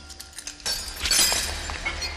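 Glass shattering: a sudden crash about two-thirds of a second in that rings on and fades.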